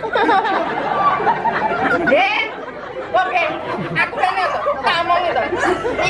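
Several people talking at once, a babble of overlapping voices from performers and crowd, with a brief lull about two seconds in.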